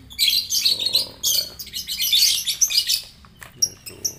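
Caged lovebirds singing in a dense, rapid, high-pitched twittering chatter that runs for about three seconds, then a short lull and a few brief calls near the end.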